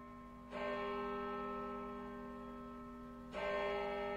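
Baritone ukulele and guitar, several takes layered, strumming two single chords, one about half a second in and another near the end, each left to ring and slowly fade.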